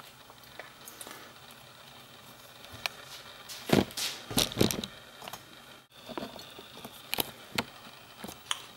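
Handling noise at a workbench: scattered small clicks and knocks, with a cluster of louder thuds about four seconds in.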